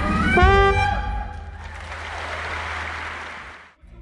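Pit orchestra with brass, sliding up into a final held chord in the first second or so, then a steady wash of audience applause that cuts off abruptly near the end.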